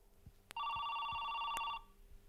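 Desk telephone ringing once: a single electronic ring lasting a bit over a second, starting about half a second in.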